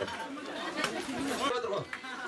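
Many people talking at once: crowd chatter of guests, with voices overlapping.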